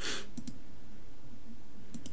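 Two quick computer mouse clicks close together about half a second in, as a measurement is placed on a trading chart.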